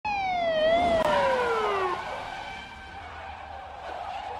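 A siren winding down: one long wail falling steadily in pitch over about two seconds, with a short rise just before the first second, then fading out behind fainter steady tones.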